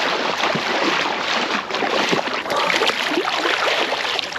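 Seawater sloshing and splashing steadily around a person wading into the sea and lowering herself in up to the shoulders.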